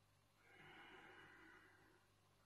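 Faint, slow breath of a man doing a yoga breathing exercise. There is one soft, unhurried breath of about a second and a half, in a near-silent small room.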